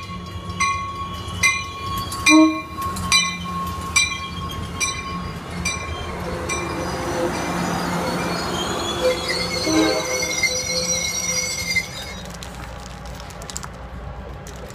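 Train running past on the rails: sharp clacks about every 0.8 s as the wheels cross rail joints, then a high, steady wheel squeal. The sound drops to a lower level near the end.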